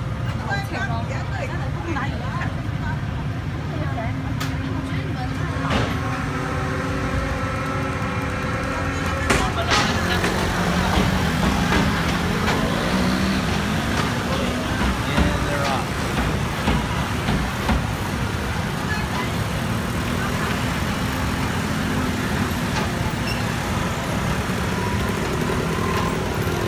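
Motor scooters riding off a ferry's ramp, their small engines revving and passing, over a steady low rumble. The chatter of passengers walking off runs underneath.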